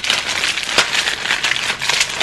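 Small clear plastic zip bags crinkling and rustling as they are handled and shuffled, with a run of quick crackles.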